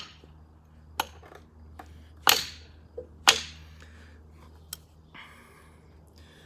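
Steel knife blade being banged down into a piece of pine wood resting on the ground: four sharp knocks about a second apart, with a few lighter taps between.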